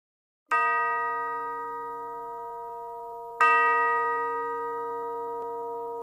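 A bell-like chime struck twice, about three seconds apart, each note ringing on and slowly fading.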